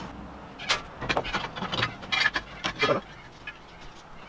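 Irregular metallic clicks and knocks, some briefly ringing, as a flat steel bar is positioned and marked in a manual flat-bar bender and its backstop screw is wound in. The clicks come mostly in the first three seconds, then it goes quieter.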